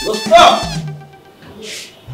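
A short, whining, pitched vocal cry in the first second, like a meow, over the tail end of background music.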